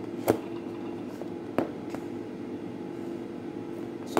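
Two sharp clicks of a clear plastic food container being handled on a counter, about a quarter second and a second and a half in, over a steady hum from a kitchen appliance.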